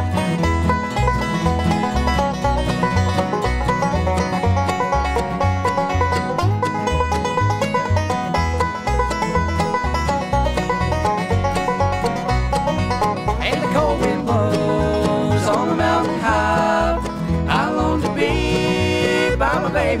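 Bluegrass band playing the instrumental opening of a song: banjo rolls with mandolin, fiddle, acoustic guitar and upright bass, the bass keeping a steady beat.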